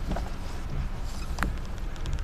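Steady low engine and tyre rumble heard inside a car's cabin while driving slowly, with two light clicks about a second apart.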